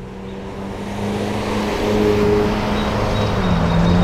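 A motor vehicle approaching, its engine hum and road noise growing steadily louder.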